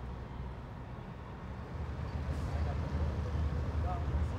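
Engine of a small passenger boat running as it approaches, a steady low rumble that grows louder about halfway through.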